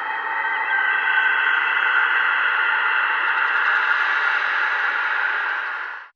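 A steady static-like hiss from a title-card sound effect, with a few faint held high tones in it, holding level and cutting off just before the end.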